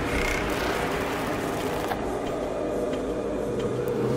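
Electronic drum and bass music in a beatless stretch: sustained, droning synth tones over a low bass rumble, with no strong beat.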